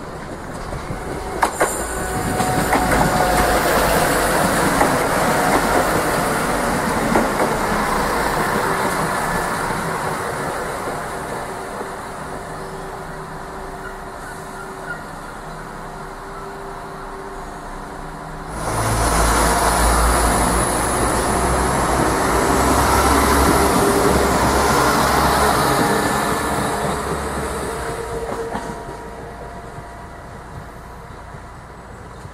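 Diesel multiple-unit trains running through a station at close range, with a steady engine hum over the rumble of wheels on the track. About two-thirds of the way in, the sound suddenly gets louder and deeper with heavy low rumble as a train passes close, then fades near the end.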